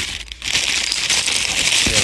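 Clear cellophane party bag crinkling as it is handled and squeezed, starting about half a second in and going on steadily.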